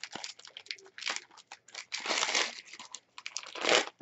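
Gift wrap crinkling and rustling as a small wrapped present is unwrapped by hand: a series of short rustles, with longer ones about two seconds in and just before the end.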